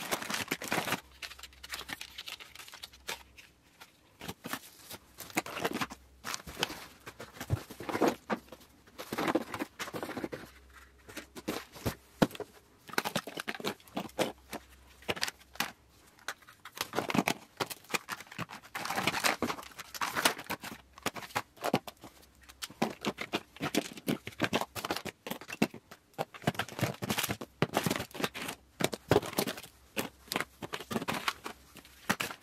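Makeup products and their boxes, tubes, compacts and plastic and foil packaging being picked up and set down on flattened cardboard: irregular light clicks, taps and clatter with some rustling and crinkling of packaging.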